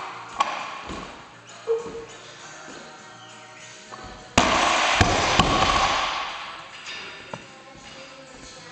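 Loaded barbell with rubber bumper plates dropped from overhead onto the platform: a sudden loud crash about halfway through, two more sharp bounces within the next second, then the plates rattling and settling. Lighter knocks near the start as the bar leaves the floor.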